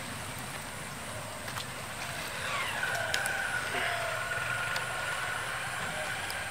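Low steady rumble of a distant engine. About two and a half seconds in, a long pitched tone slides down and then holds steady for about three seconds.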